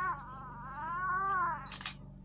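Baby boy crying in a whiny wail: a short cry, then a longer one that rises and falls and lasts about a second and a half.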